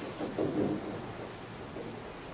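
Dry-erase marker writing on a whiteboard: soft, irregular scratchy strokes over the steady noise of a lecture hall.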